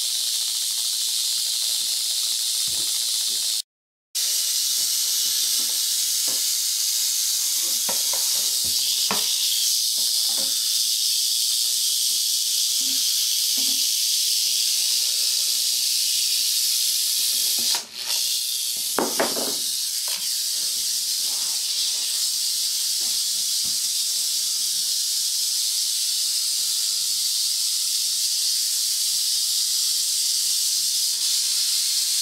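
Rattlesnake rattling its tail without pause, a steady high-pitched buzz. A few light knocks sound in the middle and again a little past the two-thirds mark.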